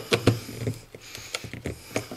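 Small hand chisel working under a flat pack chip on a circuit board, making a run of irregular light clicks as the blade knocks and prys against the board and chip.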